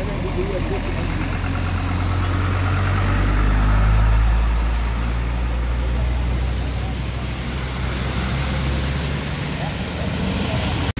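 Low drone of vehicle engines as trucks and a minivan drive slowly through floodwater on the road. The drone swells to its loudest about four seconds in, then eases off.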